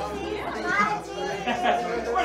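Several people's voices overlapping in indistinct chatter.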